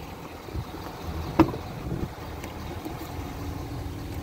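Rear door latch of a 2019 Ford F-450 pickup clicking open about a second and a half in, with a smaller knock about half a second later, over a low steady rumble.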